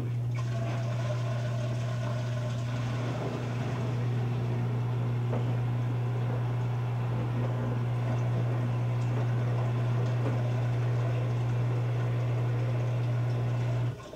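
Electrolux EFLS527UIW front-load washer tumbling a wet moving blanket in a wash phase: the drum motor's steady hum with water sloshing, starting suddenly and stopping suddenly near the end.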